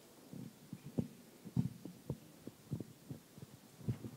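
A series of soft, low thumps at an uneven pace, roughly two a second.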